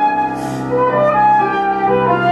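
Concert flute playing a melody of sustained notes, accompanied by a Petrof grand piano.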